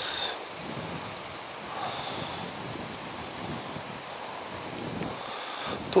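Steady rushing outdoor noise of wind, with no distinct events.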